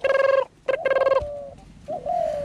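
A caged bird calling: two loud calls of about half a second each, held on a steady pitch, followed by a fainter, shorter one.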